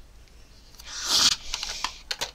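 A short scraping rush about a second in, then a few sharp plastic clicks, as the rear storage compartment of a toy foam-dart sniper blaster is handled.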